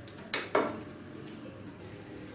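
Two sharp clinks of a glass pan lid against a metal pan, a fraction of a second apart, the second ringing briefly; then a faint steady hiss.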